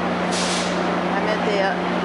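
A short hiss of released air, about half a second long, from a standing train's air brakes, over a steady hum of idling train equipment, with voices on the platform behind.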